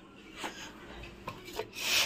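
Rubbing, scraping noise of the handheld phone being handled against its microphone while it moves, with a few faint clicks, swelling to a louder rub near the end.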